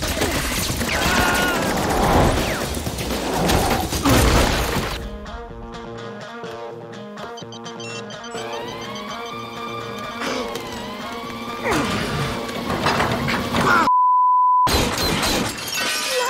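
Film action soundtrack: smashing and breaking impacts over action music. A quieter stretch of sustained electronic-sounding tones follows in the middle. A single steady beep comes near the end, and then the crashes resume.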